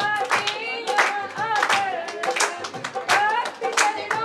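A devotional song sung by a voice, with an audience clapping along in a steady rhythm of about three claps a second.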